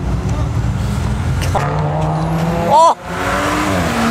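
A car's engine running hard as it accelerates past close by, with a short shout from a spectator just before three seconds in.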